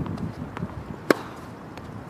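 One sharp tennis-ball impact about a second in, the crack of a ball meeting a racket or the court during a baseline rally.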